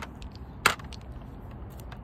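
Small hard .68-calibre balls being set down one at a time on a plastic digital scale: a sharp click at the start, a louder one about two-thirds of a second in, and a few faint ticks near the end.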